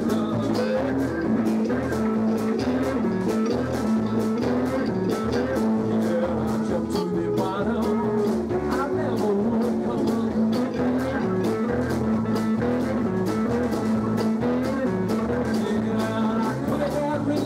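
Live blues-rock band playing: electric guitars, drum kit keeping a steady beat, and keyboard.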